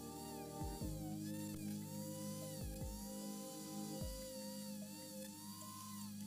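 Background music of long held notes, changing every second or two, with a low note sliding downward at each change.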